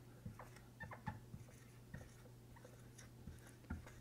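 A dry-erase marker writing a word on a whiteboard: faint, irregular short squeaks and taps of the tip on the board.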